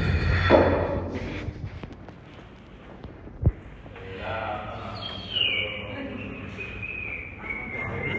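Gym background with voices, a single sharp knock about three and a half seconds in, and a faint high tone that slides slowly down in pitch through the last few seconds.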